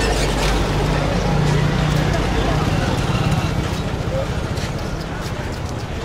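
Busy city street: a motor vehicle engine runs close by and fades away after about three seconds, over the voices of people around.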